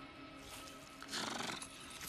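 Film soundtrack: faint background music, then a short, louder animal call a little over a second in.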